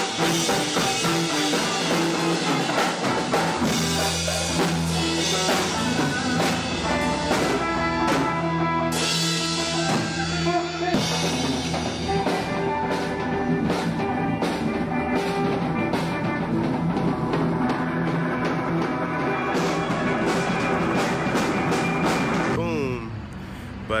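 Live band jamming: a drum kit with cymbals driving the beat under electric bass and electric guitar. The music cuts off shortly before the end.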